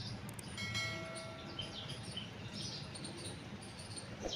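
Small birds chirping in the background. About half a second in, a short click is followed by a bright bell-like ding that rings for about a second and fades.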